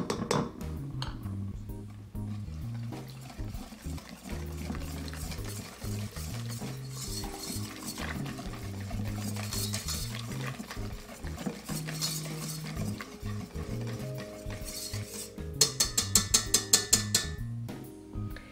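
Wire balloon whisk stirring wheat gluten into a thin liquid sourdough batter in a stainless steel mixing bowl, scraping against the metal. Near the end comes a quick run of sharp clicks of the whisk against the bowl. Background music plays throughout.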